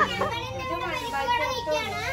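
Several children's voices talking and calling out over one another, with a faint steady tone underneath.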